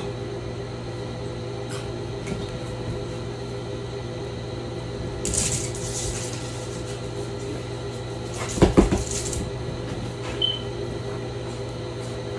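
Steady electrical hum with household handling noises: a brief rustle about five seconds in, then a quick cluster of knocks and thumps a few seconds later, the loudest moment, and a short high squeak soon after.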